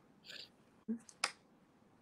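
A brief soft hiss, then two sharp clicks about a third of a second apart near the middle.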